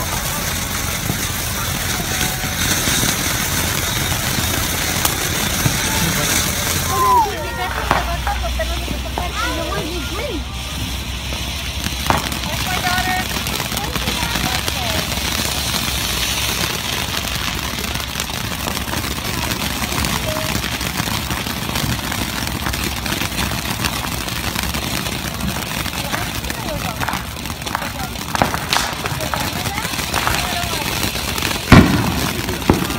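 Steady background noise with faint, unclear voices now and then and a few brief clicks.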